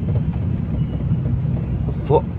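Steady low rumble of a car's engine and tyres on a rain-wet road, heard from inside the moving car's cabin.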